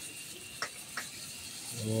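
Fine water spray from a garden hose nozzle hissing steadily onto a tray of sphagnum moss, with two short clicks around the middle.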